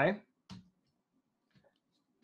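A single sharp click of a computer keyboard key about half a second in, as the Command-I shortcut is struck, then a couple of faint ticks near the end.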